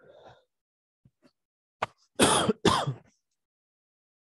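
A person coughs twice in quick succession, just after a sharp click.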